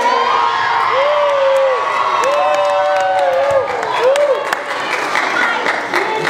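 A crowd of children shouting and cheering together, with three long calls that rise and fall in pitch in the first few seconds.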